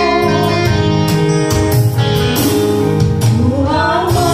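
A woman singing a gospel song into a microphone over electronic keyboard accompaniment with bass notes, her voice gliding upward into a new line near the end.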